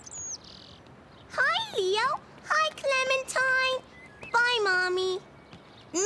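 A short, high bird chirp right at the start, then three drawn-out calls in high voices. The first slides steeply down and back up in pitch; the other two hold their pitch steady.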